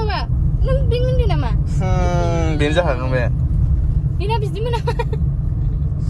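Steady low road rumble inside a moving car's cabin, with high-pitched wordless vocal sounds over it: a long falling call about two seconds in and a quick run of short notes around four to five seconds.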